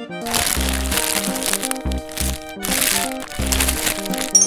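Background music with a steady bass beat, over the crackling and crinkling of a clear plastic blister pack being pried off its cardboard backing.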